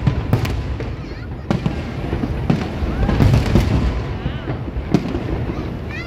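Aerial fireworks bursting overhead: a rapid, irregular series of bangs over a continuous low rumble, heaviest about three seconds in, with one sharp bang near the end.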